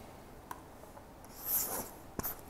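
Stylus scratching briefly across a tablet surface as a loop is drawn, a short high-pitched rub a little after the middle, with a faint click about half a second in.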